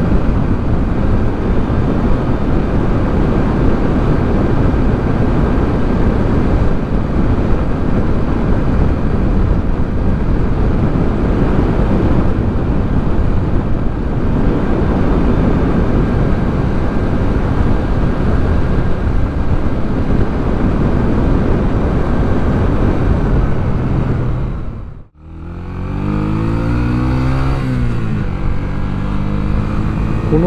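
Yamaha YB125SP's single-cylinder four-stroke engine running under way, largely masked by a steady rush of wind on the microphone. About 25 seconds in the sound cuts out for a moment. Then the engine note comes through clearly, its pitch falling and rising.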